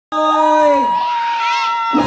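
Audience cheering and shouting over long held tones; one held tone slides down in pitch a little under a second in, and a few quick rising-and-falling shouts come near the end.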